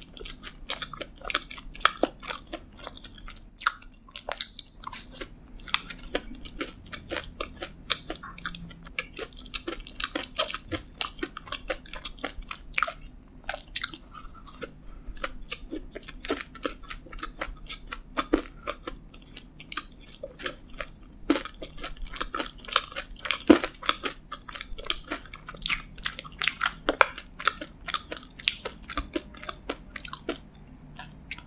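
Close-miked chewing of a chocolate-glazed donut topped with M&M candies, with many small sharp clicks and crunches throughout.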